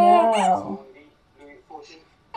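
A drawn-out, wavering vocal sound that falls in pitch and fades out about a second in, followed by faint small sounds.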